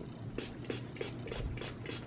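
A makeup brush rubbed back and forth against a cleaning surface, about three short scratchy strokes a second, while it is being cleaned.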